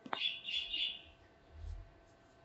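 A sharp click, then a bird chirping in a quick run of high notes for about a second, with a soft low thump near the end.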